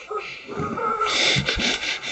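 Quick, breathy panting, a few short gasps a second, starting about a second in.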